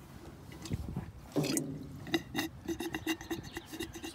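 Rubber bulb of a battery hydrometer being squeezed, gurgling and squishing as battery acid is pushed out of its tube back into a lead-acid battery cell. It starts about a second and a half in, then comes as a run of short gurgles, about four a second.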